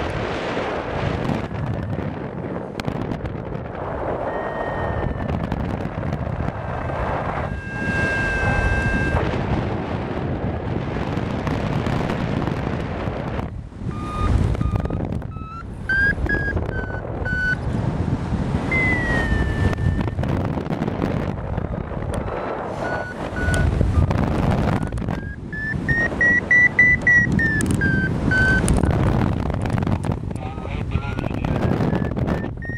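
Wind rushing over the microphone in flight, with a paraglider variometer's electronic tone sounding on and off, its pitch stepping and gliding up and down, highest near the end. The rising pitch signals the glider climbing in thermic lift.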